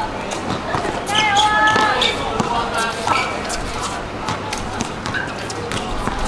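Several basketballs bouncing irregularly on a hard court as players dribble and shoot. Voices call out over the bouncing, with one held shout about a second in.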